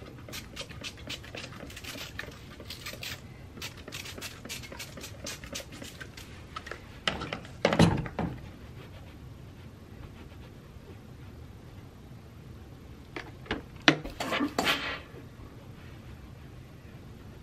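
Hand-held plastic trigger spray bottle squirting water onto fabric seams, many quick squirts in a row over the first six seconds or so. Later come a louder knock about eight seconds in and a few more handling knocks and a short hiss near the end.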